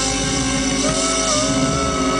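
Live reggae band playing, with electric bass and drum kit. About a second in, a held tone enters that slides slightly in pitch.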